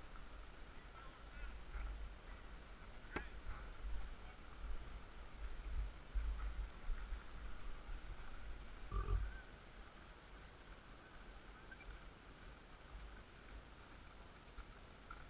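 Low rumble on a helmet-mounted camera's microphone as a rider handles a motorcycle tail bag and a pocket camera, with one sharp click about three seconds in and a dull knock about nine seconds in.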